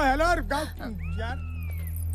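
A voice speaking briefly, then, about a second in, one high whining call that arches up and slowly falls for nearly a second, over a steady low hum.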